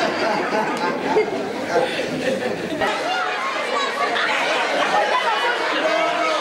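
A roomful of schoolchildren chattering at once, many overlapping voices with no single speaker standing out.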